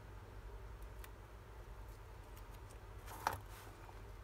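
Faint handling of paper pieces on a cutting mat: light taps and small ticks, with one brief louder rustle a little over three seconds in, over a steady low hum.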